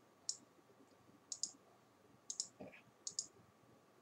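Computer mouse clicking: short, sharp clicks about once a second, most of them in quick pairs like double-clicks.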